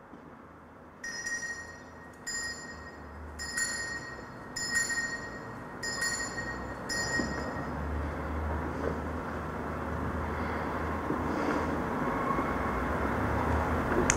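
A small altar bell struck six times, about once a second, ringing at the elevation of the chalice during the consecration. It is followed by a low, steady sound that slowly swells.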